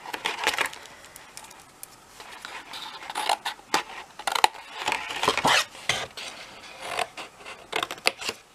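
Small scissors snipping through cardstock in a series of short cuts, cutting into the scored corners of the sheet.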